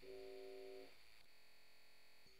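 Near silence at the very end of the song: a faint held synth chord from the beat fades out about a second in, leaving only very faint steady tones.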